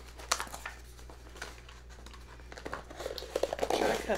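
Cardboard tea subscription box and its paper packaging being handled and opened by hand: scattered light scrapes and rustles, growing busier and louder near the end.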